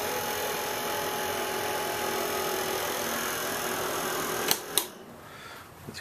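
A fan runs with a steady whirring hum. Two sharp clicks come near the end, and after them it drops to a faint hiss.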